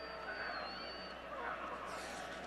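Stadium crowd noise at a college football game, heard through the TV broadcast, with a thin high steady tone for about the first second.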